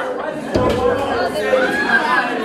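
Several people talking over one another in unclear chatter, with a low thud about half a second in.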